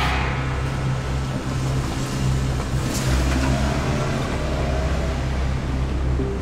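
A car driving slowly through an underground car park, its engine running, over a low steady drone. There is a rising whoosh at the start and a brief sharp accent about halfway through.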